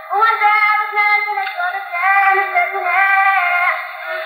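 A woman singing a Kurdish folk song, holding long ornamented notes that slide between pitches, with short breaks between phrases. The recording is old and poor, so the voice sounds thin, with no highs.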